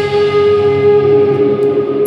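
Live post-rock band music: electric guitars sustain a long held note and ringing chords with the drums dropped out.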